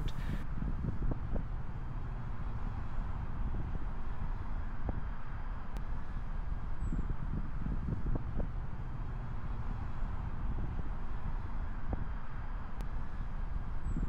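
Wind blowing across a microphone outdoors: a steady low rushing noise with no clear pitch.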